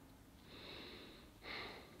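Faint breathing: a soft breath about half a second in, then a short, slightly louder breath near the end.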